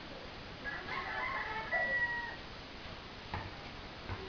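A rooster crowing once, a pitched call of about a second and a half that ends on a held note. Near the end comes a single thump, a basketball bouncing on concrete.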